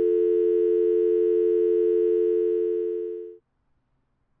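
A steady telephone dial tone, the signal that the line is working, which cuts off about three and a half seconds in.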